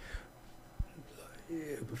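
A short pause in a man's speech, with a soft low thump just under a second in. A faint voice sound near the end leads into his next words.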